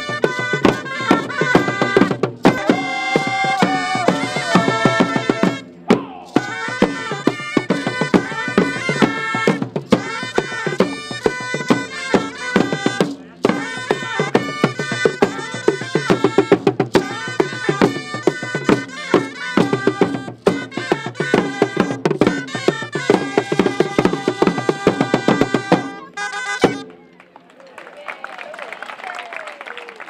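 Costumed street band playing traditional music: drums beating a steady rhythm under a sustained pitched melody. It cuts off abruptly about 27 seconds in, leaving only faint crowd noise.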